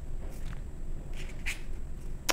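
Paper pages of a small paperback guidebook being thumbed and turned: a few short, soft rustles about half a second and about one and a half seconds in.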